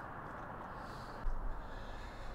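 Faint steady outdoor background noise with no speech, and a brief soft sound about a second and a quarter in.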